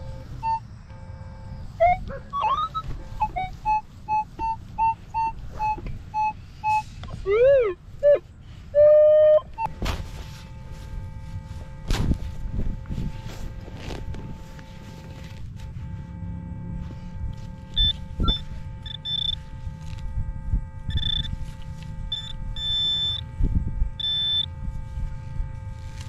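Minelab E-Trac metal detector sounding target tones: a run of short beeps and a few rising and falling tones in the first ten seconds. Then several dull thumps of digging, and short high beeps from the Garrett Pro Pointer AT pinpointer near the end.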